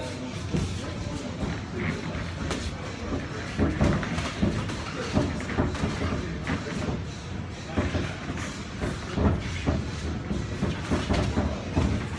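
Boxing gloves landing punches on gloves and headgear during sparring, irregular thuds several times a second, with feet shuffling on the ring canvas.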